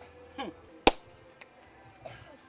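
A single sharp finger snap a little under a second in, just after a short vocal exclamation that falls in pitch.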